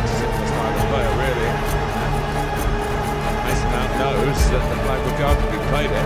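Music with a steady beat, with an indistinct voice under it.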